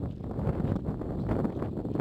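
Wind buffeting the phone's microphone outdoors, making an irregular low rumble.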